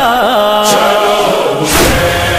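A male noha reciter's voice holds a wavering, ornamented sung note that trails off within the first second, over heavy thumps about once a second: the matam chest-beat rhythm that goes with a noha.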